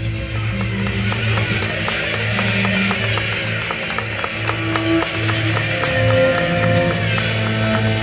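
Live rock band playing an instrumental passage: electric guitar and bass over a drum kit, with sustained low bass notes, fast repeated picked guitar strokes and a steady cymbal wash.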